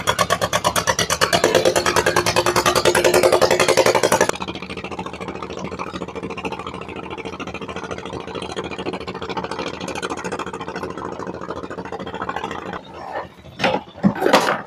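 A fishing boat's engine running close by with a rapid, even beat. About four seconds in it suddenly becomes quieter and duller and keeps running in the background, with a few knocks near the end.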